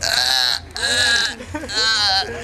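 A person's loud, high-pitched wavering cries, three in a row with short breaks between them.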